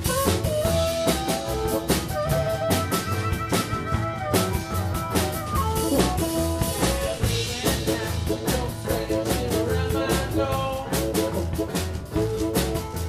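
Live blues-rock band playing an instrumental passage: harmonica over a steady drum-kit beat and guitar.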